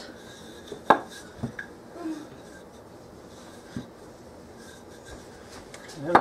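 Wooden rolling pin rolling out soft pastry dough on a countertop: a quiet rubbing with a few light knocks, the sharpest about a second in.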